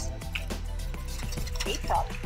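Background music with a steady bass line, with faint ticking and rustling as a plastic packet of small drone propellers is handled.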